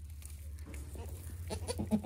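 Newborn goat kids and their doe making soft, faint bleats in the straw, the calls starting about a second in and growing louder near the end.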